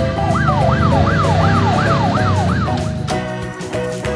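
A police siren yelping, its pitch rising and falling about seven times in quick succession, over background music. The siren stops a little before three seconds in and the music carries on.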